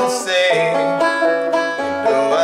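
Five-string banjo fingerpicked in continuous rolls, playing chord accompaniment.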